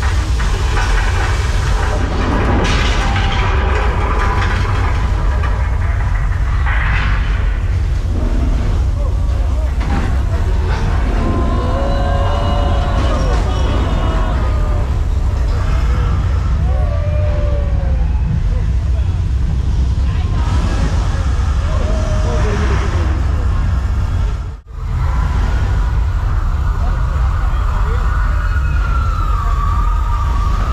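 Staged earthquake effect on a studio-tour set: a heavy, continuous low rumble with crashing and clattering, and repeated rising-and-falling wailing tones over it. The sound cuts out briefly about 25 seconds in.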